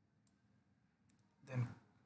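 Faint clicks of a computer mouse: a single click about a quarter second in and a quick cluster of clicks about a second in.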